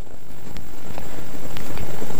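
Helicopter running, a steady noisy rush with a low rumble that grows gradually louder.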